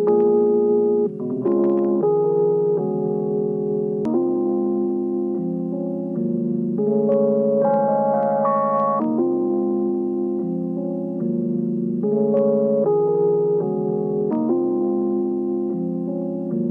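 Jazzy electric piano chords played from an Akai MPC-X, a new sustained chord every one to two seconds.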